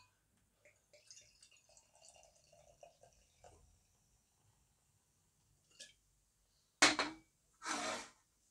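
Imperial stout poured from a bottle into a tilted glass: a faint trickle and gurgle for about three seconds. Then a brief, sharp louder sound about seven seconds in.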